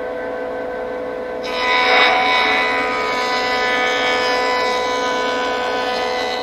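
Delta jointer running with a steady whine, then from about a second and a half in its cutterhead planing the edge of a curved hardwood lamination, a louder, noisier cutting sound over the whine.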